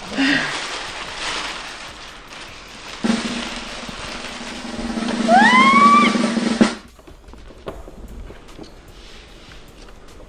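Snare drum roll sound effect growing louder over a few seconds, with a rising cry near its peak, then cutting off suddenly about seven seconds in.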